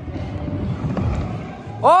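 Scooter wheels rolling fast over a plywood skatepark ramp: a low, grainy rumble, with a faint click about a second in.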